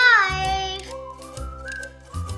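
Upbeat children's background music with a repeating bass beat. A high, gliding melodic note sounds at the start, then steadier tones follow.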